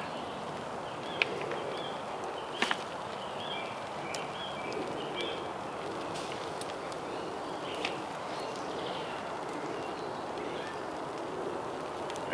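Wood fire burning steadily in a small metal fire box, with a few sharp clicks, and faint birdsong in the background.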